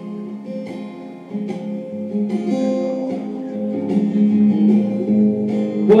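Acoustic guitar strummed in steady chords, an instrumental passage of a song; a voice starts singing right at the end.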